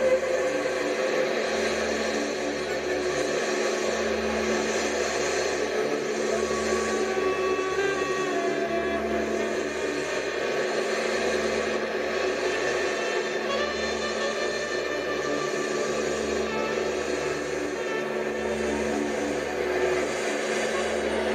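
Live experimental rock band playing a droning, noisy improvised passage: a steady held drone over a dense mechanical-sounding layer of electronics and instruments, with a low throb pulsing about every two seconds.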